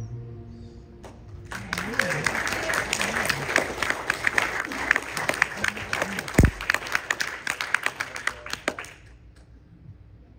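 The last sustained note of the song dies away, then a congregation applauds for about eight seconds, with a few voices calling out over the clapping and a single low thump partway through. The applause stops about nine seconds in.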